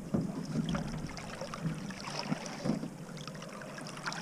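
Small waves lapping against a boat's hull, with wind on the microphone and a few light knocks scattered through.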